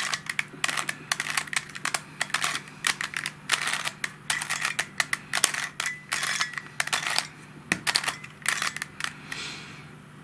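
Plastic Helicopter Cube puzzle clicking and clacking as its edges are turned in quick succession, an irregular run of several sharp clicks a second. The clicks thin out near the end.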